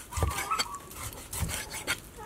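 A large kitchen knife slicing cooked cow tongue on a wooden cutting board. The blade saws through the meat and knocks dully on the board about four times.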